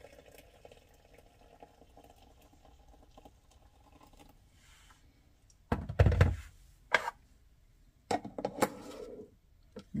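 Hot water from an electric kettle pouring into a glass teapot, a faint steady trickle for about four seconds. After a short pause comes a loud thunk, a sharp click about a second later and a further short clatter near the end, as the kettle and the teapot lid are set down.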